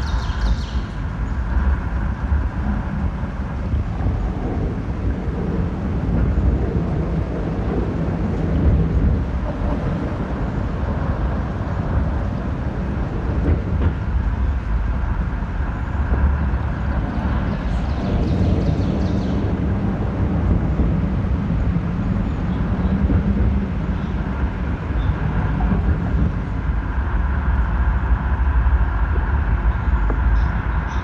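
Field-recording soundscape: a steady low rumble with a few faint steady tones above it, and brief high-pitched sounds right at the start and again about 18 seconds in.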